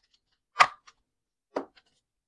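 Two short, sharp taps about a second apart, the first louder, as a clear plastic zippered cash pouch is handled and lifted in a ring binder.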